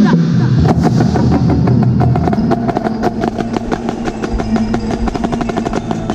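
Marching snare drum played up close in fast, dense stick strokes together with the rest of a drumline, with sustained pitched tones underneath.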